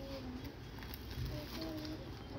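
Faint, indistinct voices of passengers inside a stationary train carriage, over a low steady hum.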